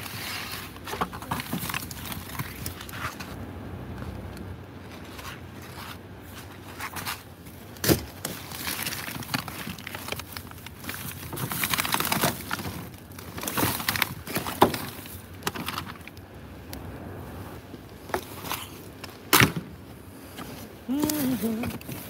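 Plastic garbage bags rustling and crinkling as gloved hands rummage through a trash bin, with a few sharp knocks as items are shifted.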